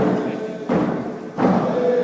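Drum beaten in a slow, steady beat, about one stroke every 0.7 seconds, under group singing with held notes.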